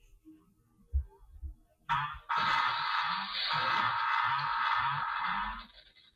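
Distorted, static-like noise from a hoax TV-hijacking style video, with a low wavering drone pulsing underneath. It starts about two seconds in, after a dull thump, and cuts off just before the end.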